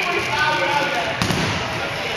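Dodgeballs bouncing and smacking on a hardwood gym floor, with one sharp smack a little over a second in, amid players' voices.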